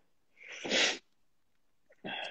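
A single short, breathy burst from a person, about half a second long, sharpest near its end. It comes without words.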